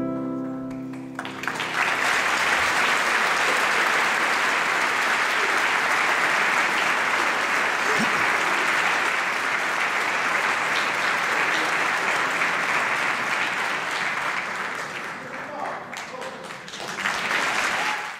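A grand piano's final chord rings and dies away in the first second, then an audience breaks into sustained applause that eases a little and swells again near the end.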